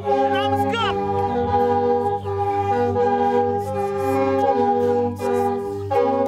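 Music of sustained, reedy chords that step from note to note, in the sound of the Hmong qeej (bamboo free-reed mouth organ), with a voice gliding through a sung phrase in the first second and a few sharp beats near the end.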